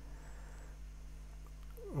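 Quiet pause filled by a low, steady electrical hum and faint room tone. Near the end a short falling vocal sound leads into speech.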